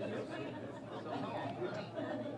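Low, overlapping chatter of several people talking quietly among themselves in a room.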